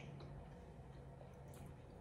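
Near silence: a faint steady low room hum with a few soft, faint mouth clicks from someone chewing a bite of food.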